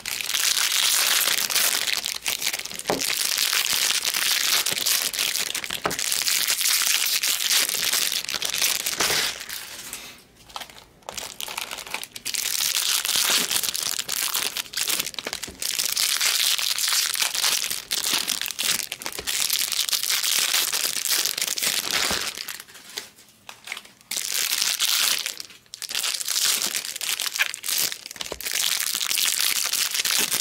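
Foil wrappers of 2022 Bowman Draft Jumbo trading-card packs crinkling and tearing as pack after pack is opened by hand. The sound comes in stretches of several seconds with short pauses between.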